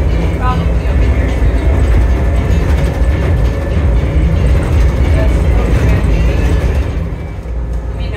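Las Vegas Monorail train running, heard from inside the car as a steady low rumble.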